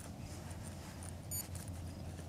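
Quiet low rumble with faint handling rustles and small clicks, and one very short high-pitched electronic chirp about a second and a half in.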